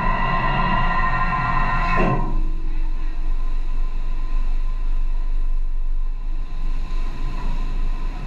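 A sustained musical chord ends abruptly about two seconds in, leaving a steady low rumble of ship and sea noise on board.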